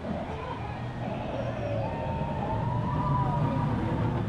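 Vekoma junior roller coaster train running along its steel track and passing overhead: a rumble that grows louder as it nears, with a high wavering tone from about two seconds in.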